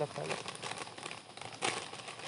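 Wrapper of a small packet crinkling as it is opened by hand, with a louder rustle near the end.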